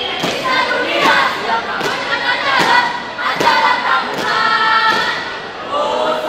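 A troop of scouts chanting a yel-yel in unison, sung notes over a beat of stamped thumps coming a little faster than once a second.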